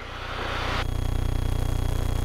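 Single-engine Beechcraft Musketeer's piston engine and propeller heard in the cabin in flight: a steady drone with a fast even pulse that grows louder over the two seconds, with more hiss coming in about a second in.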